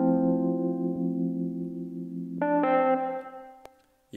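Software Wurlitzer electric piano (Lounge Lizard) playing chords through chorus and reverb with the lows cut, giving a washed-out, vintage sound with a slight waver. A held chord rings and fades, a new chord is struck about two and a half seconds in, and it dies away before the end.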